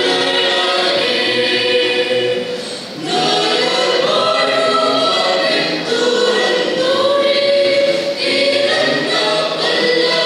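Mixed church choir singing a Malayalam Christmas carol, with long held notes and a short break between phrases about three seconds in.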